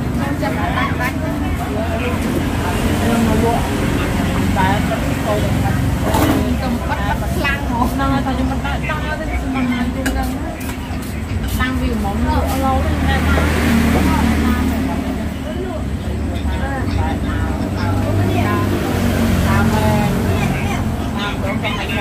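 Several people talking at a meal table, most likely in Khmer, over a steady low rumble of road traffic.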